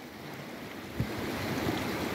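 Steady rush of moving water, with a soft knock about a second in.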